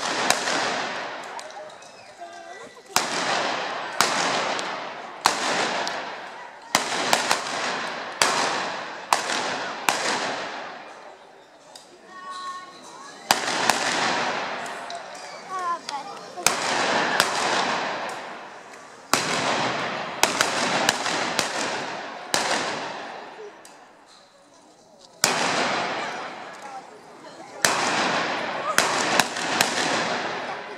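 Shotguns fired into the air as celebratory shots: some two dozen sharp, loud reports at irregular intervals, often two or three in quick succession, each ringing on in a long echo.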